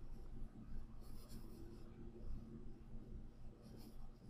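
Faint computer mouse clicks and handling over a low, steady room hum: two soft, brief clicks or rustles, one about a second in and one near the end.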